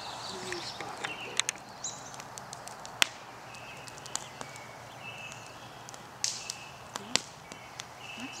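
Outdoor evening ambience: a wood fire crackling in a steel fire bowl with a few sharp pops, the loudest about three seconds in, while birds call faintly with short high notes in the background.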